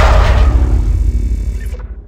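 Tail of an intro sting's boom sound effect: a deep rumble that fades away, its hiss cutting off suddenly near the end.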